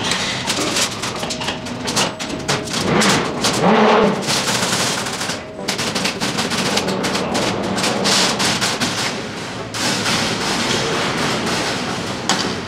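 Loose steel reinforcing bars rattling and clanking against each other and the steel formwork table as workers shake them into place: a dense, rapid run of metallic clatter with brief pauses.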